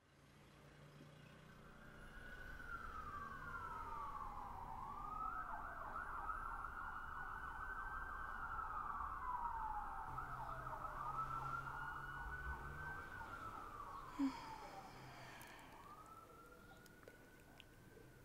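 An emergency vehicle's siren wailing in slow rising and falling sweeps, growing louder toward the middle and then fading away. A brief sharp knock about fourteen seconds in.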